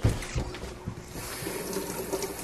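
Two light knocks, then a kitchen tap is turned on about a second in and water runs steadily into the sink for rinsing a cucumber.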